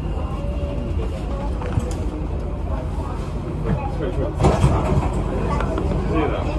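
Metro train cabin rumbling low as the train slows to a stop at a station, with passengers' voices faintly over it and a louder stretch of noise near the end.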